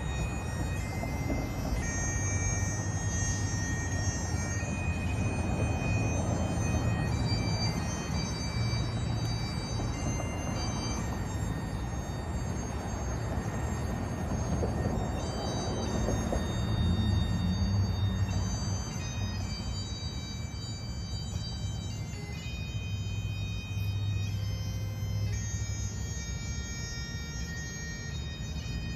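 Bagpipes playing a slow tune in long held notes that change every few seconds, over a steady low drone.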